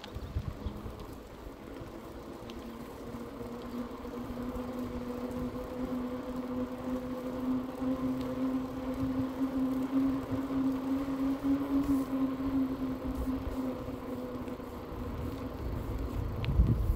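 Electric bike's motor humming at one steady pitch while riding, growing louder from about two seconds in, edging slightly higher as speed builds and fading near the end. Low wind rumble on the microphone runs underneath.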